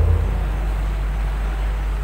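Steady low electrical hum with a faint hiss from the handheld microphone and its sound system, heard on its own in a pause between a man's words.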